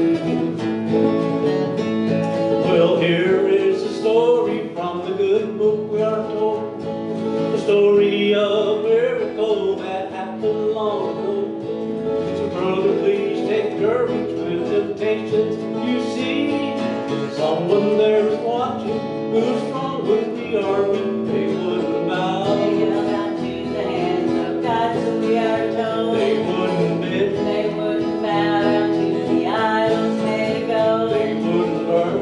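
A small live band playing a country gospel song: strummed acoustic guitar and electric guitar with a wavering melody line over them, playing on without a break.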